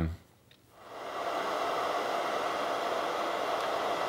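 Hand-held hair dryer switched on about a second in, coming up to speed quickly and then running steadily, a rush of air with a faint motor hum in it.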